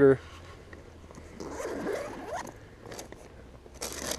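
A zipper on a tackle backpack being pulled open: a rasping sound lasting about a second in the middle, followed by a few light clicks and a sharper tick near the end.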